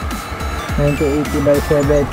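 Background music under a man speaking, with a steady low rumble beneath.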